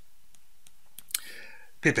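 Faint scattered clicks and taps of a stylus on a pen tablet as digits are written, then a short noisy sound about a second in, and a man's voice starting near the end.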